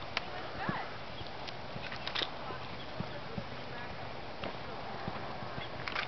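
Horse cantering on a dirt arena: scattered hoofbeats over a steady background hiss, with a few sharper knocks.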